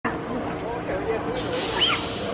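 Several people's voices talking and calling out together, with one short high rising-and-falling cry near the end, over a steady low hum.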